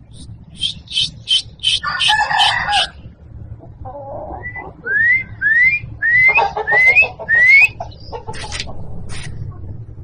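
Indian game rooster calling: a short harsh call about two seconds in, then a run of about five quick rising chirps around the middle, with sharp clicks scattered between.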